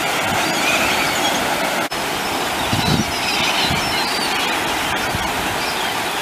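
Steady rush of surf and churning water, with many short, high calls of gulls scattered over it. The sound drops out for an instant just before two seconds in.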